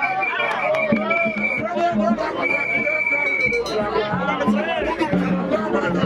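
Several voices singing a Vodou ceremony song over crowd chatter. A high steady tone is held twice, each time for over a second.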